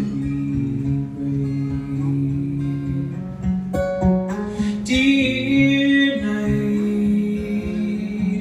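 Acoustic guitar strummed and picked in a live solo performance, chords ringing steadily with a fresh strike a little before halfway.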